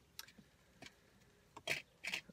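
Faint lip smacks and small clicks of a man puffing on a tobacco pipe, with a short breathy puff about three-quarters of the way through.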